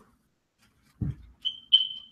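A brief low thump, then two short high-pitched beeps near the end, the second louder.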